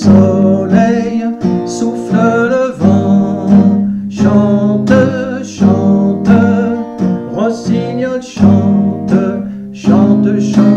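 A man singing a French chanson chorus to his own strummed acoustic guitar, with steady rhythmic strumming throughout.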